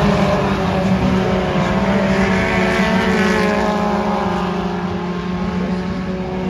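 Several dirt-track stock cars' engines running together as the cars circle the track, a steady blend of engine notes that eases off slightly toward the end.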